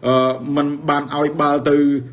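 Only speech: a man talking in Khmer, in a steady monologue.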